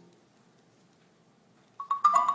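A pause in a marimba and piano duet: the last chord dies away and there is near silence for over a second, then quick, bright marimba notes come back in near the end.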